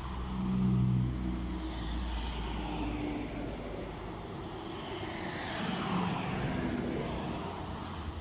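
Road traffic passing close by on a paved road: a small car goes by about a second in, then pickups and an SUV approach and pass, with a second swell of engine and tyre noise around six seconds.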